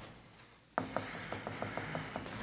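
Near silence, then a little under a second in a faint steady hum comes up suddenly, with a run of light clicks, about five or six a second.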